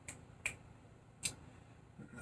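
Three short, faint clicks in an otherwise quiet room: one at the very start, one about half a second in, and one about a second and a quarter in.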